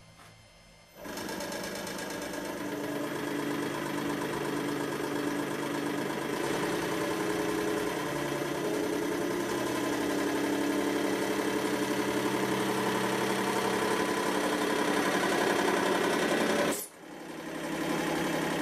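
A 100-ton hydraulic press running steadily as its ram crushes a compacted block of aluminium foil: a mechanical buzz that grows a little louder. It cuts off near the end and starts again briefly.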